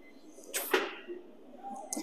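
A man breathing out hard through the mouth: a short rush of breath about half a second into a dumbbell lateral raise. A second, shorter breath comes at the very end.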